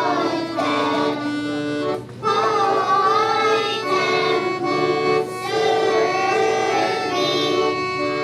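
Children's choir singing with accordion accompaniment, with a short break between phrases about two seconds in.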